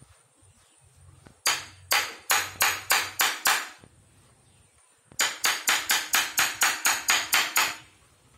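Hammer striking a steel punch held on a thin German silver sheet, chasing the pattern into the metal: sharp metallic taps, each with a short ring. About seven taps come in a run, then a pause of a second or so, then a quicker run of about a dozen taps near the end.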